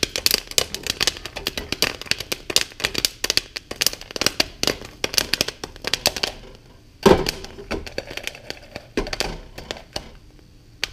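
Popcorn popping in a covered pot on a stovetop: a quick, dense run of sharp pops that thins out after about six seconds, as the batch nears done. One louder thump comes about seven seconds in.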